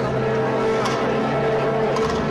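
A symphonic wind band playing a processional march, holding one long, steady low chord.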